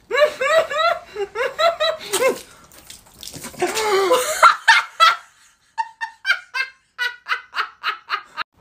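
Hearty laughter in quick rhythmic bursts of about three to four a second. A louder, rougher outburst comes about four seconds in, and short laughing pulses resume near the end.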